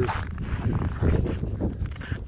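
Footsteps crunching over snow and clothing rustling against the phone's microphone: a steady, rough scraping noise.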